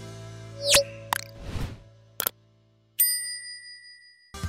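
Background music fades out under a string of sound effects: a quick rising swoosh, a few sharp clicks, then a single bell ding about three seconds in that rings on as it fades. These are the sounds of a YouTube subscribe-button and notification-bell animation.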